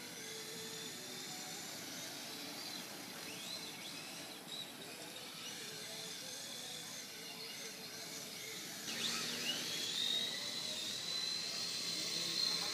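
Radio-controlled cars running on a track, their motors giving high whines that rise and fall. About nine seconds in, one car's whine climbs and then holds steady and louder.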